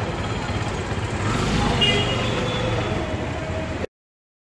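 City street traffic: engines running with a steady rumble, voices mixed in, and a brief high-pitched tone about two seconds in; the sound cuts off suddenly near the end.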